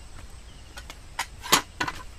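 A quick run of sharp knocks or taps, about six, with the loudest about one and a half seconds in, over faint high chirping in the background.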